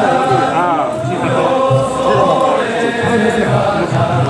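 Several men's voices chanting a festival song in long, drawn-out, wavering notes: an Awaji danjiri-uta sung around the danjiri float.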